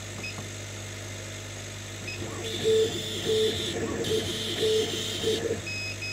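Chinese CO2 laser cutter running a job: the head's motors whir and buzz in short repeated runs as it traces two small squares, with a hiss during each pass, over a steady low hum, and a few short high beeps near the end. The laser is firing at only 10% power, just scratching the surface, because minimum and maximum power were entered the wrong way round.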